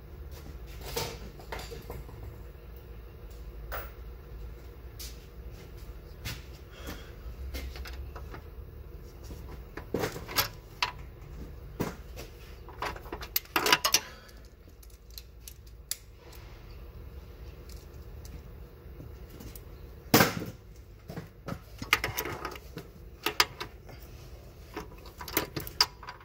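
Hand ratchet clicking, with metal clinks from the socket and extension, as a bolt on the rear engine mount is backed out. The clicks come in scattered bursts with pauses between them, over a low steady hum.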